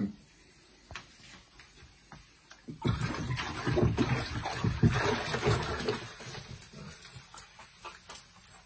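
Water splashing and sloshing in a plastic tub as a hand fishing net is swept through it to catch a fish. The splashing starts about three seconds in and dies away over the next three seconds.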